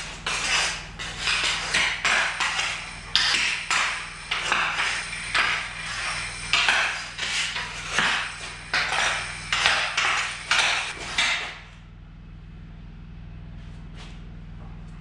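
A hockey stick scraping and clattering on a concrete floor as a Labrador tugs at it, in a rapid, uneven run of rough scrapes that stops shortly before the end.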